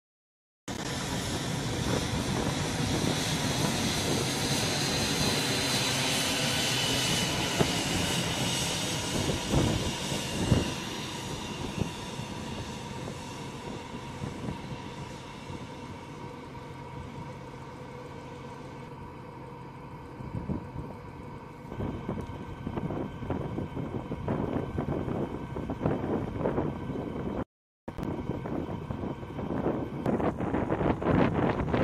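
Four-engine C-17 Globemaster III jet passing overhead, a steady turbofan rush with a high whine slowly falling in pitch. The engine sound fades to a lower rumble about halfway through. Near the end, gusts of wind hit the microphone; the sound cuts out briefly at the very start and again a few seconds before the end.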